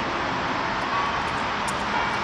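Steady outdoor city background noise, a continuous traffic rumble with no distinct events.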